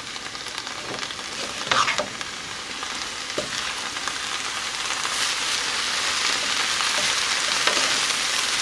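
Ramen noodles, shredded cabbage and carrots sizzling in a skillet as they are stir-fried and tossed with a wooden spatula, with a few soft scrapes of the spatula. The sizzle grows gradually louder.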